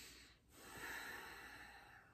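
A woman's deep breathing, with no voice in it. A long breath ends just after the start, and after a short pause comes a long, quieter breath out that slowly fades.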